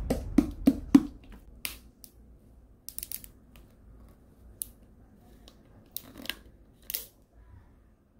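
Plastic screw cap of a makgeolli bottle being twisted open: scattered short clicks and crackles, in a cluster about three seconds in and again around six to seven seconds.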